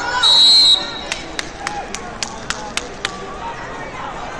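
A referee's whistle gives one short, shrill blast as a takedown is awarded in overtime of a folkstyle wrestling match. It is followed by a run of about eight sharp claps, roughly three a second, over crowd chatter.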